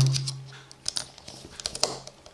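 Small scattered clicks and scratches of a screwdriver working a screw terminal on a plastic alarm door contact as wire is wrapped around and tightened under the screw.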